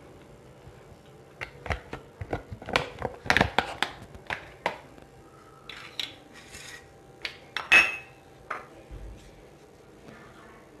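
Dishes and small bowls clinking and knocking as they are handled and set down, a quick run of sharp clicks in the first half and a few more later, the loudest a little before the end.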